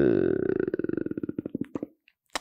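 A man's drawn-out hesitation sound 'eee' falls in pitch and trails off into a creaky rattle of slowing pulses in the throat. It fades out just before two seconds in.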